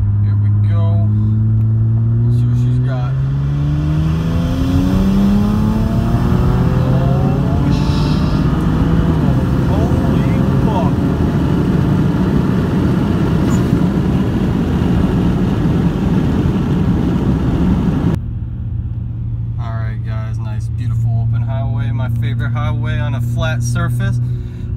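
BMW 335i's twin-turbo N54 inline-six, fitted with upgraded 19T turbos and running on E85, pulling at full throttle in third gear from about 2,000 rpm. The engine note climbs steadily for a few seconds, then gives way to a loud, dense rush of engine and wind noise that cuts off abruptly about 18 seconds in. After that the engine runs steadily under a voice.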